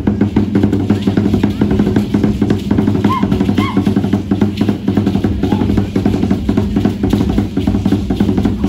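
Fast, steady drumming on deep drums accompanying a costumed dance performance.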